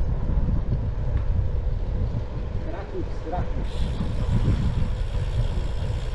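Uneven low wind rumble on the camera microphone with tyre noise from a Triban Gravel 120 gravel bike rolling along a paved city street; a brighter hiss joins about halfway through.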